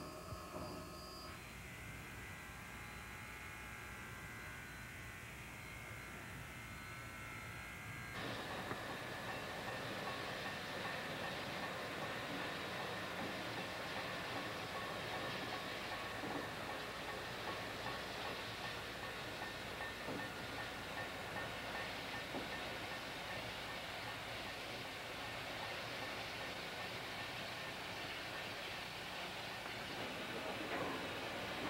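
Railroad locomotive sound: several steady held tones for about eight seconds, then an abrupt change to a louder, noisier rush of a locomotive running that carries on to the end.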